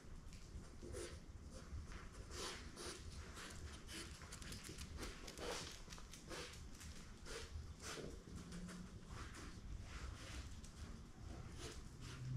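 Faint, irregular patter of a puppy's paws and claws tapping on a bare concrete floor as it moves about.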